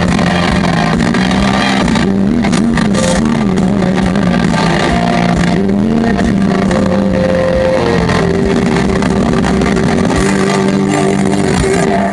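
Live rock band playing the loud closing section of a song: electric guitars and keys hold droning chords over drums and cymbals, with long held notes toward the end. The music stops right at the end.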